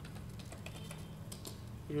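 Computer keyboard keys being pressed, a scattered handful of separate clicks, over a low steady hum.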